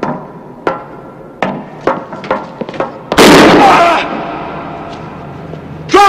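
Footsteps on metal stairs, about two steps a second, each with a short metallic ring. About three seconds in, a very loud bang dies away over about a second, and a second sharp bang with ringing comes at the very end.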